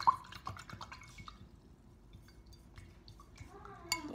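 A sharp click just after the start, followed by a quick run of small ticks and taps over the next second, then quieter, with another click near the end.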